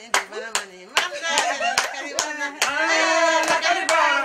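Hand clapping in a steady rhythm, about two to three claps a second, with voices singing and calling over it. The voices grow louder after the first second.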